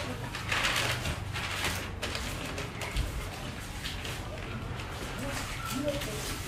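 Shop ambience: indistinct background voices with light handling and rustling noises as produce is picked and put into a crate.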